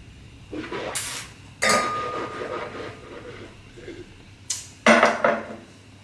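A wine taster sips red wine and slurps air through it in the mouth, with a noisy sucking hiss about two seconds in. It goes quieter, then brief breathing noises and a short louder sound come near the end, where a glass clinks as it is set down.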